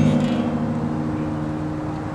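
A strummed acoustic guitar chord ringing on and slowly dying away.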